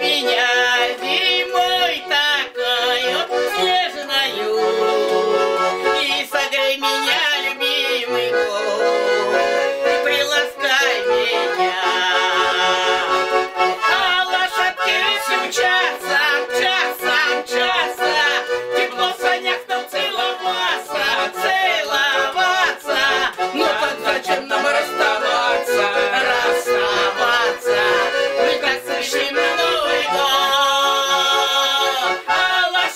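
Garmon, a small Russian button accordion, playing a folk song with a steady rhythmic accompaniment, with a woman and a man singing along.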